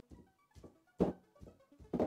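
One short thunk about a second in as a hand shoves the plastic Yandex Station Lite smart speaker on a wooden desk top; its rubber base grips and it does not slide. Faint background music with scattered soft notes underneath.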